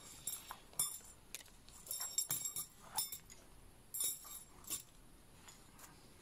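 Brass pipes threaded on a synthetic cord clinking against one another as they are slid along the line: irregular light metallic clinks, some with a brief high ring, clustered around two and four seconds in.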